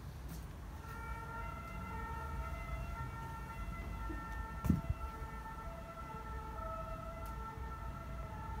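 Several steady electronic tones at different pitches, held and overlapping, from a sensor-triggered garden sound installation. A single low knock comes about halfway through, like a walking cane tapping the wooden deck.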